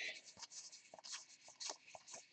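2019 Topps Allen & Ginter trading cards sliding and scraping against one another as a stack is thumbed through by hand: a faint run of short, scratchy rubs.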